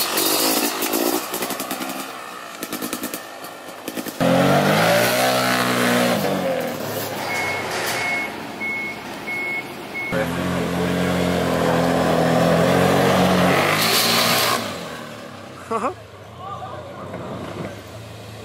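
Dirt bike engine revving hard during a wheelie. This is followed by a heavy vehicle engine revving with a reversing alarm beeping steadily, then an engine running at a steady idle that stops suddenly.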